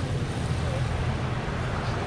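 Steady wind rumble on the camera's microphone, a low buffeting with a hiss above it, over the noise of street traffic.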